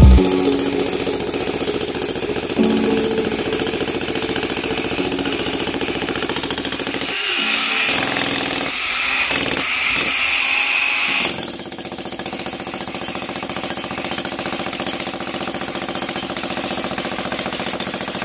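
Electric jackhammer (demolition breaker) hammering into a concrete patio slab in a fast, steady rhythm, breaking it up.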